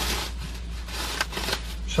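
Paper wrapping and a thin plastic bag rustling and crinkling as a takeaway shawarma is unwrapped by hand, with a few sharper crinkles in the middle.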